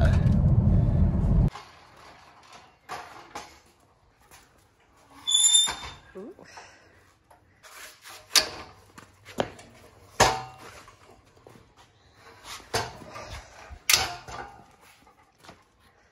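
Car cabin road noise for about the first second and a half, then scattered clicks, knocks and clanks as a Porter-Cable 12-inch chop saw and its folding metal stand are handled and set up, with a brief high squeak about five seconds in.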